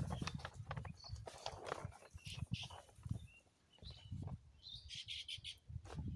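Scattered short bird chirps over quiet, irregular rustling and soft knocks of a jute sack being handled, with a brief cluster of higher rustles near the end.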